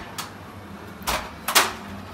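Aluminum ladder being handled and shifted in a closet: three short metallic knocks, the loudest about a second and a half in.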